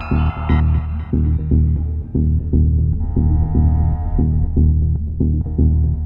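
Mid-1990s psychedelic trance: a heavy, fast, evenly pulsing synth bass and kick drive the track, with layered synth tones above that swell in the first second and again around three to four seconds in.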